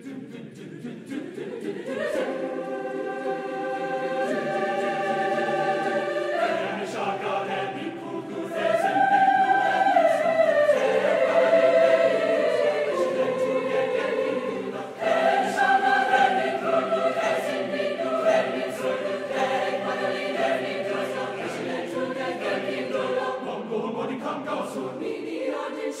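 Mixed high school choir singing sustained chords, swelling from soft to loud over the first few seconds. It is loudest around the middle, dips briefly about halfway through, then comes back in full.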